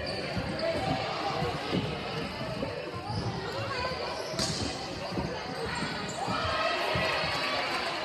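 Volleyball rally in a gymnasium: the ball is struck and hits the floor in dull thuds, with one sharp smack about four and a half seconds in. Spectators and players talk and call out throughout, in the reverberant hall.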